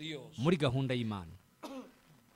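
A man's voice says a few words, then a single short throat-clearing cough near the end.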